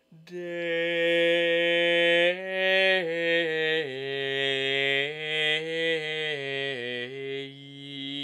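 A solo man singing Gregorian chant, unaccompanied. He enters just after the start on a long held note, then moves through a melody that steps mostly downward.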